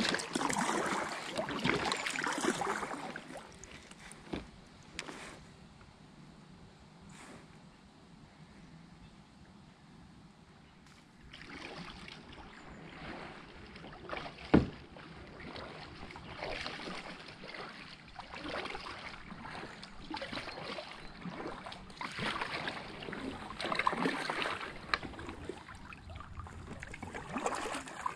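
Kayak paddle strokes dipping and splashing in calm river water: close and loud at first, then a quiet spell, then regular strokes growing louder as the kayak paddles up and past. One sharp knock sounds about halfway through.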